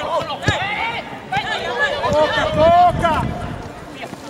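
Men's voices shouting across an outdoor football pitch, one held call loudest near the end, with a single thud of a football being kicked about half a second in.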